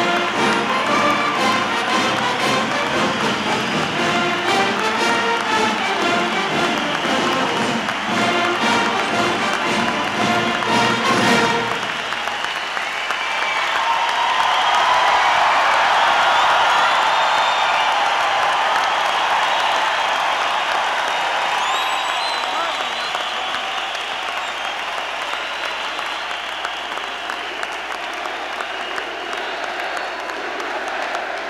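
A band playing brass music over applause stops abruptly about twelve seconds in, leaving a large crowd clapping and cheering with some whistling; the applause swells, then slowly dies down.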